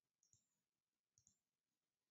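Near silence with two faint computer mouse clicks, each a quick pair of ticks, about a quarter second in and again just past a second in.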